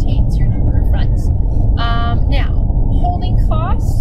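A person's high-pitched voice in short utterances over a loud, steady low rumble.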